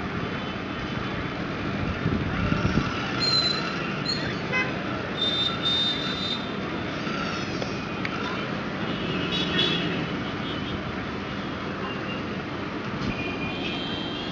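Busy street traffic noise, with vehicle horns beeping several times: about three seconds in, around five to six seconds, near ten seconds, and again near the end.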